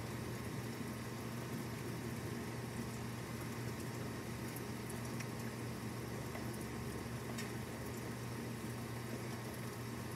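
Steady rain falling, an even patter with a low steady hum underneath and a couple of faint ticks.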